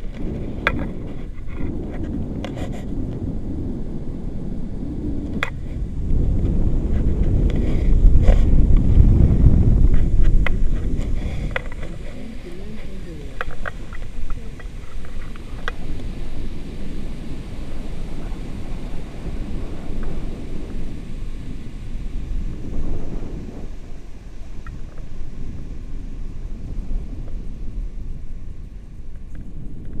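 Wind buffeting the microphone of an action camera in flight under a paraglider: a continuous low rumble that grows louder for several seconds a little after the start, then eases, with a few small clicks.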